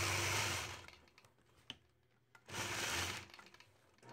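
Longarm quilting machine stitching in two short runs, each about a second long and tailing off at the end.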